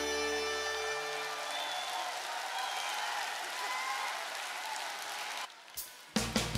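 The song's last held chord dies away over the first second or so, and a large audience applauds for several seconds. The applause breaks off suddenly shortly before the end.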